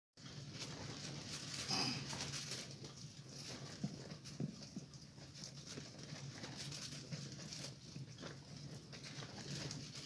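Strong wind buffeting a pop-up camper, heard from inside: a steady rush with irregular flapping and rattling of the canvas and a few sharp knocks.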